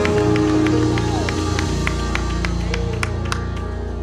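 Live church gospel music with a heavy bass line, sustained chords and sharp percussive hits, gradually getting quieter as the song winds down.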